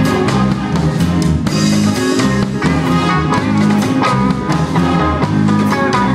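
Blues band playing an instrumental passage with no singing: guitar over a drum kit keeping a steady beat, with bass notes underneath.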